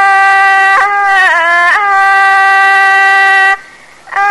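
A woman singing in Thai classical style, drawing out long held vowel notes with smooth bends in pitch. She breaks off briefly near the end, as for a breath.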